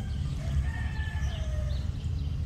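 Faint distant bird calls, rooster-like, with one call falling in pitch near the end, over a steady low rumble on the microphone.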